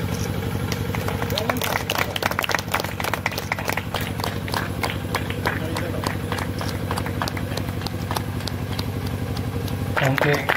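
A steady low engine-like hum runs throughout, with many scattered sharp clicks from about a second and a half in, over indistinct background voices.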